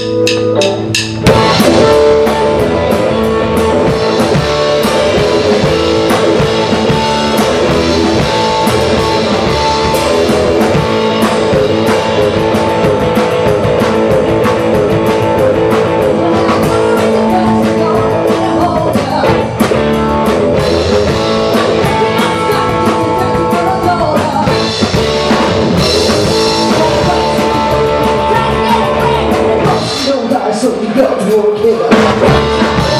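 Live rock band playing: electric guitar, bass guitar and drum kit, with a woman singing into a microphone. The full band comes in about a second in, after a few ringing guitar notes, and keeps a steady beat.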